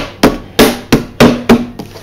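Plastic lid of a Wall's Soft Scoop ice cream tub being pressed down onto the tub and snapping into place around the rim: a run of about seven sharp clicks, roughly three a second.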